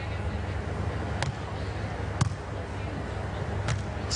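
Three sharp smacks of hands striking a beach volleyball in a rally, about a second apart, the last one near the end, over a steady low background noise.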